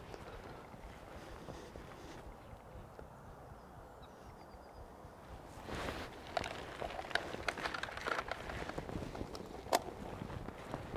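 Faint, steady riverside background for about the first five seconds. Then footsteps scuffing on the leafy, muddy bank and handling noise from a plastic carrier bag and clothing, as irregular short scuffs and clicks, with one sharper click near the end.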